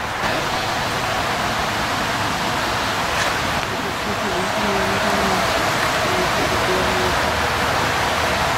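A steady rushing noise, like running water or wind, with faint voices in the background.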